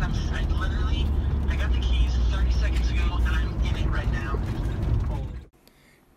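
Road noise inside a moving van's cabin: a steady low rumble of engine and tyres under voices, which cuts off suddenly near the end.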